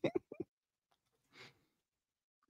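A person's short laugh: a few quick chuckles in the first half second, each fainter than the last, then a soft breath out.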